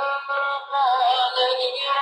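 A song with a high sung voice holding long notes that waver in pitch, with a short dip about half a second in.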